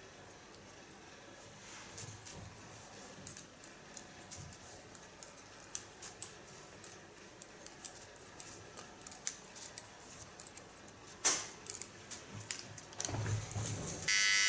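Hairdressing scissors slice-cutting and snipping wet hair: a scattered run of faint, light clicks and snips, with a couple of louder ones late on.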